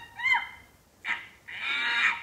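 A person's voice imitating monkey chatter: a short squeaky call that rises and falls, then hissing sounds about a second in and again near the end.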